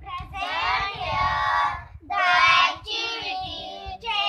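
A group of young children singing together in unison, in three phrases with short breaks about two seconds in and just before three seconds.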